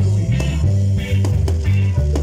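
Live rock band playing an instrumental passage, with a loud electric bass line, guitar and regular drum hits.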